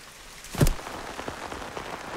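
Rain falling steadily with scattered patters. A single sharp thump sounds about half a second in.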